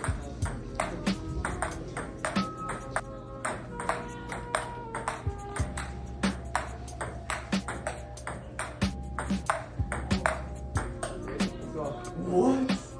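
Table tennis ball clicking back and forth off paddles and table in a rally, under background music with a bass line and beat.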